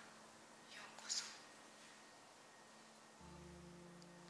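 Near silence: faint room tone with a brief soft hiss about a second in, and a low steady hum that comes in near the end.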